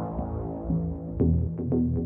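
Electronic background music with a deep, throbbing low bass under steady sustained tones. A sharp hit comes a little over a second in, and the bass grows louder after it.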